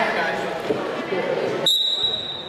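Voices in a gym, then near the end a referee's whistle gives one steady, high blast to start the wrestling bout.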